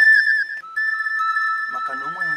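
Background music of high, held flute-like whistle tones: a quick warble, then steady notes that shift in pitch, with two notes sounding together after the first second. A man's voice comes in briefly near the end.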